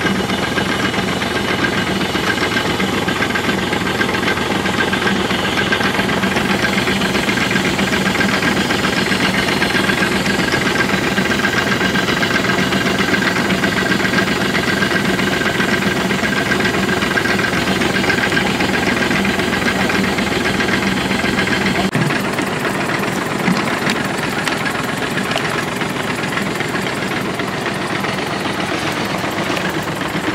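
Tractor engine running steadily at the sprayer, turning the power take-off that drives a diaphragm pump, which keeps the water and paint mix in the tank stirred while paint is poured in. The deepest part of the engine sound drops away about two-thirds of the way through.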